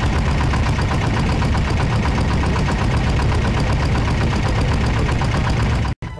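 Small fishing boat's motor running steadily at speed, loud and close, with a fast even pulse.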